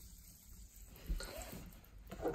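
Faint stirring of carbonated mineral water in a clear plastic cup with a wooden stir stick: soft swishing with a few light taps around the middle.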